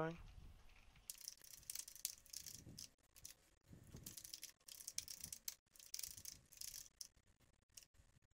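Computer keyboard being typed on in quick irregular bursts of keystrokes, faint.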